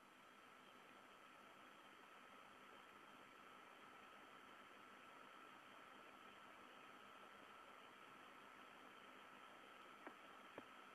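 Near silence: a faint steady hiss with a thin, faint high tone running through it.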